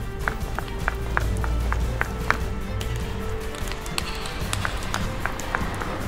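Quick, evenly spaced footsteps, about three a second, over background music with a steady low bass and a held tone.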